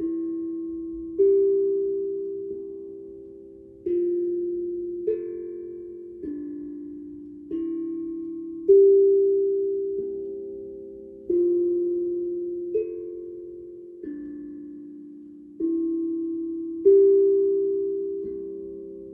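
Steel tongue drum struck with a mallet in a slow, unhurried melody, about one note every second and a bit. Each note rings and fades away before the next.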